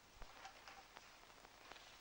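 Near silence: faint soundtrack hiss with a few weak ticks.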